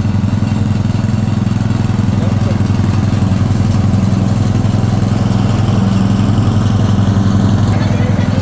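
Petrol lawn mower engine running loud and steady.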